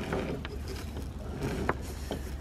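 Peak halyard on a gaff rig being hauled hand over hand, the rope running through wooden blocks with two faint clicks, over a steady low rumble.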